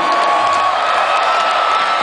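Large festival crowd cheering and whooping between songs at a rock concert. A long, steady high tone is held over the cheering and steps up slightly in pitch about half a second in.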